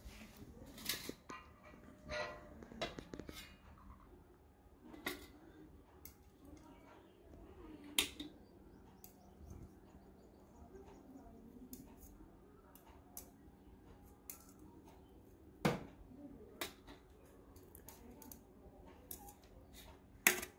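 Faint, scattered clinks and scrapes of a metal spatula on a steel wire rack and a steel plate as baked patties are lifted across, with a couple of sharper clinks.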